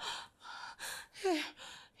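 A woman's short breathy gasps, several in quick succession, with a brief exclaimed "hey" about a second in.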